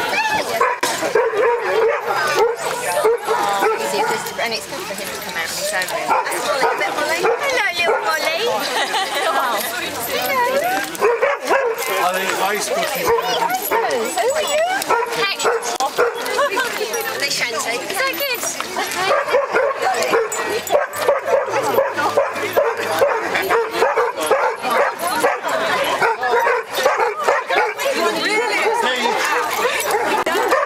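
Several Vizslas barking and yelping, one call over another, against people chatting.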